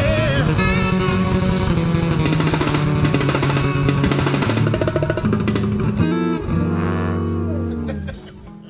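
Live acoustic band closing out a soul song: two acoustic guitars strumming over a hand drum, with a held, wavering vocal note at the start. A last accented chord about six seconds in rings on and starts to fade near the end.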